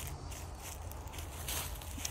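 Footsteps on dry fallen leaves, a few short rustling steps over a steady low rumble.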